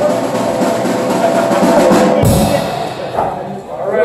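Drum kit playing a rapid roll that ends a little over two seconds in with a cymbal crash and bass drum hit, ringing out after. Voices murmur underneath.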